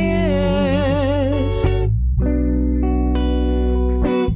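A song playing: a singer holds a note with vibrato over guitar accompaniment, then, after a short break about halfway through, a steady held chord.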